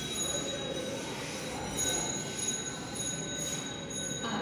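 Steady background hiss with several faint, high, steady whining tones and no speech.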